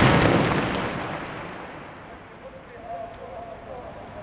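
The tail of a gas cylinder explosion: a loud rumbling blast that dies away over about two seconds. It is followed by the fire burning on with faint scattered crackles.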